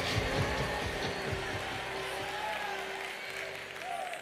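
A song's outro fading out: a held musical note over crowd applause and cheering from a sampled speech recording, getting steadily quieter.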